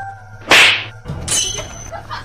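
A whip-like swish sound effect, short and loud, about half a second in. It is followed by a low thump and a second, fainter swish that carries a thin, high ringing tone.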